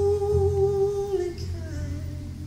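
A male singer holds one long wordless note through the PA, then slides down to a lower note about a second and a half in.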